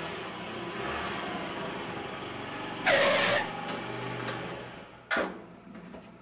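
Small motor scooter engine running steadily, with a brief louder burst about three seconds in. The engine sound fades near the end, and a sharp knock comes shortly before it stops.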